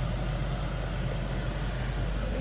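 Steady low engine rumble of a car, heard from inside its cabin.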